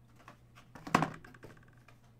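Boxed toys being handled: a run of clicks and knocks of cardboard and plastic packaging, the loudest a knock about a second in, followed by a brief quick rattle of ticks.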